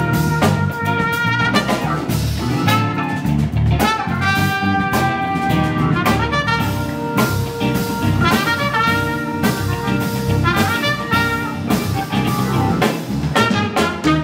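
Live jazz-funk band playing: a trumpet carries the melody in sustained phrases over electric bass and a drum kit.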